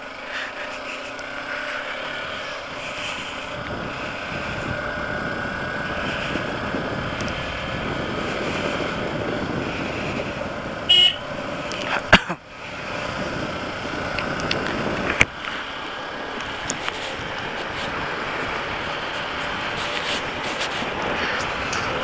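Motorcycle running steadily at road speed, with wind and road noise. A short horn toot sounds about halfway through, and there are a couple of sharp clicks soon after.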